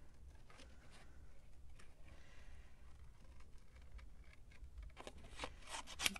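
Small paper snips cutting around a stamped image on paper: faint, scattered snips, with a few louder, sharper ones near the end.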